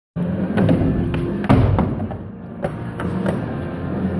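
Skateboard rolling on a concrete floor, with several sharp clacks and knocks from the board, the loudest about one and a half seconds in, over music.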